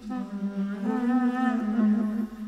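Slow clarinet-ensemble music: a long held low note with a wavering melody line above it.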